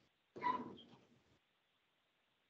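A single brief non-speech vocal noise from a person, starting abruptly and fading within about a second, followed by near-silent room tone.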